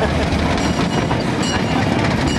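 Small open train car of a ride train running along its track: a steady low rumble of wheels and car.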